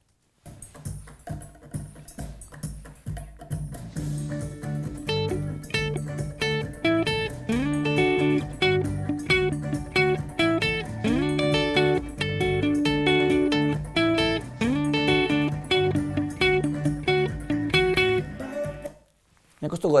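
Electric guitar playing a song's main intro melody as a line of single picked notes, with slides into some of them. It starts about half a second in and stops about a second before the end.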